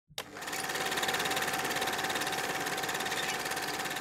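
Rapid, even mechanical clatter with a steady high whine, fading in over the first half second.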